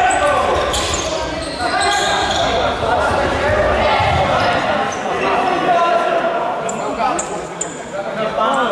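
Futsal ball kicked and bouncing on a hard sports-hall floor among players' and spectators' shouts, all echoing in the large hall.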